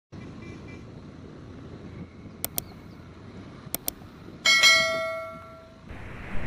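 A single bell strike about four and a half seconds in, ringing out and fading over about a second and a half. Before it come two pairs of quick sharp clicks, over a faint low rumble.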